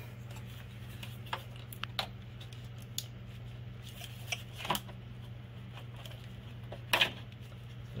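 Valve cover being worked free of the cylinder head by hand, giving scattered sharp clicks and knocks, the loudest about seven seconds in, over a steady low hum.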